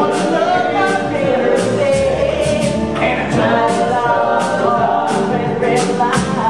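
Live band music with male voices holding long sung notes together, over repeated percussive hits.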